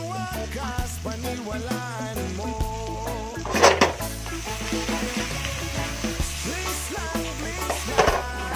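Shrimp frying in butter and oyster sauce in a wok, a steady sizzle under background music, with a louder surge of sizzling about three and a half seconds in as the wok is tossed.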